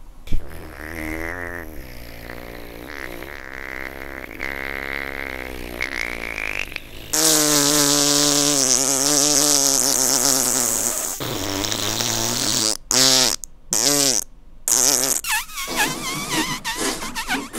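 A long, buzzing raspberry (a fart noise blown through the lips with the tongue out), wavering in pitch. It gets much louder about seven seconds in and breaks into a few short bursts near the end.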